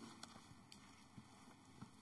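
Near silence: room tone, with one faint click less than a second in.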